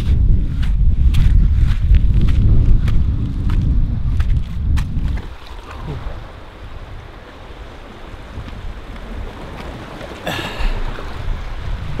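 Wind buffeting the microphone in a heavy low rumble for about the first five seconds. It then drops to a quieter, steady hiss of wind and sea surf along a rocky shore.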